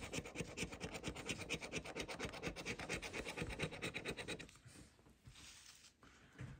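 A large metal coin scratching the coating off a paper scratch-off lottery ticket in rapid back-and-forth strokes. The scratching stops about four and a half seconds in.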